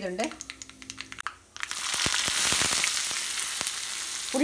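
A few clicks in the pan, then about a second and a half in, loud sizzling starts suddenly as chopped onion goes into hot oil with frying dry red chillies in an iron kadai. The sizzling carries on with scattered crackling pops.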